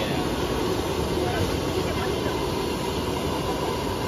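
Gas wok burner running under a large wok of frying instant noodles, a continuous rushing noise without pauses.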